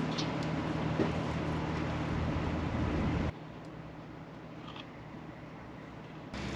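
A steady low mechanical hum from machinery running in the background, with a faint click about a second in. The hum cuts off abruptly about halfway through, leaving a quieter, even background noise.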